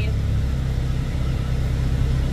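Steady low rumble of a car running, heard from inside its cabin.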